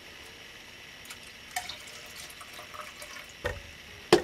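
Melted wax being poured from one electric hot pot into another: a faint, steady trickle of liquid, with a couple of light knocks from the pot.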